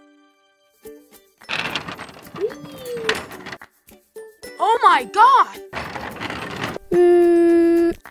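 Playful edited sound effects: noisy rustling stretches, squeaky high voice-like chirps around the middle, and a steady buzzing tone for about a second near the end.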